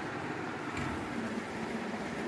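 Steady low background rumble and hiss, with a faint hum.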